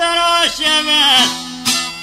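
Albanian folk song: a male voice sings long held notes that bend and fall away at the ends of phrases, over a plucked-string accompaniment.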